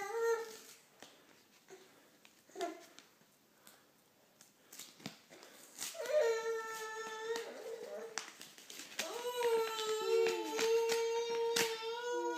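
Two long, drawn-out whining cries held at a nearly steady pitch, the first about two seconds long and the second about three, wavering slightly. They come after a quieter stretch of small clicks and rustles.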